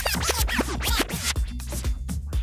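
House music at about 124 BPM with a run of quick vinyl-style scratch sweeps over a steady kick and bass line. The scratches stop about a second and a half in.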